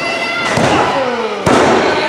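A wrestler's body hitting the wrestling ring mat, with a loud sharp thud about one and a half seconds in that echoes around the hall. Crowd voices rise and fall around it.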